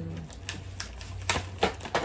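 Skincare containers being handled, a series of about five sharp clicks and knocks, the loudest a little past a second and a half in.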